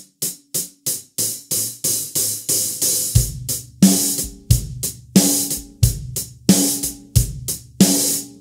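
Hi-hat played in steady eighth notes, opened and closed with the foot pedal so that some strokes ring out longer than others. About three seconds in, a kick drum and snare drum join, alternating on the beats of a basic rock groove under the hi-hat.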